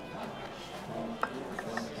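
Low background music with faint room murmur, and a single light tap about a second in.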